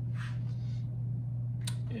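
A steady low hum, with a brief soft hiss a fraction of a second in and a single click near the end.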